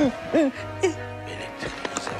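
A woman's stifled laughter: two short falling hoots in the first second, muffled behind a tissue held to her mouth, over soft background music.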